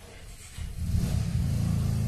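Handling noise from the recording phone being picked up and moved: a loud low rumble that starts suddenly about half a second in.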